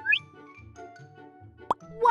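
Cartoon sound effects over bouncy children's background music with a steady beat: a quick rising 'bloop' just after the start, and a short sharp pop near the end.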